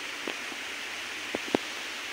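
Steady outdoor background hiss, with two faint clicks a little over a second in.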